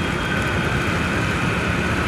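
Hero Splendor Plus motorcycle's single-cylinder four-stroke engine running steadily under road and traffic noise, with a faint steady high whine.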